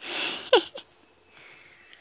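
Lion cubs at play: a short hissing snarl, then a quick high call that falls steeply in pitch, with a smaller call just after it.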